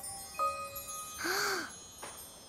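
Icicles tinkling: a few clear, bell-like notes that ring on, starting just under half a second in. A short breathy vocal sound comes about a second and a half in.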